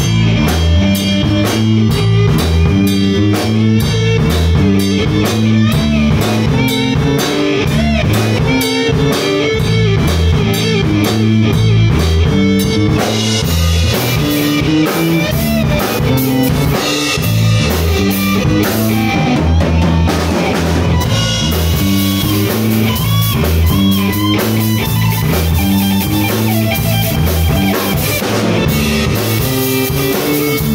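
A live blues band jamming: an electric guitar playing lead over a stepping bass line and a drum kit, without a break.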